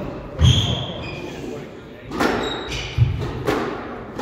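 Squash rally in a large hall: four sharp knocks of the ball off rackets and walls, two of them with a heavy thud, between short high squeaks of court shoes on the wooden floor.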